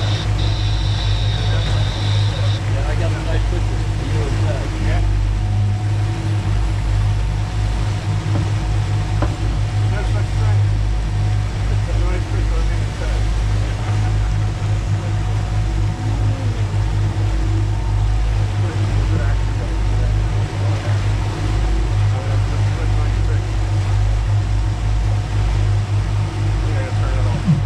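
Twin outboard motors running steadily with the boat under way, a constant low drone over the rush of water from the wake. A high steady tone sounds for the first couple of seconds.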